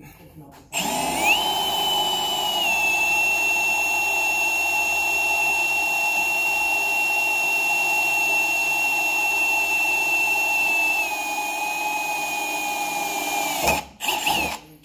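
Milwaukee M18FPD2 Gen 3 brushless cordless combi drill boring a 5 mm pilot hole through 12 mm steel plate, a steady high whine under load that starts about a second in. The pitch sags a little a couple of seconds in and again near the end, and it stops just before the end once the bit is straight through.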